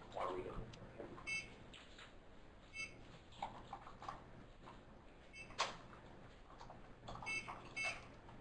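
Quiet room tone with faint, indistinct murmuring, a single sharp click about halfway through, and a few very short, faint high beeps.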